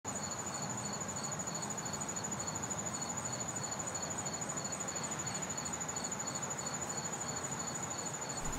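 Crickets chirping: one high, steady pulsing trill with a second, lower chirp repeating in short bursts, over a soft outdoor hiss.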